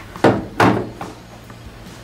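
Two dull knocks of a bulky plastic battery charger being handled on a wooden worktop, the first about a quarter of a second in and the second about half a second in.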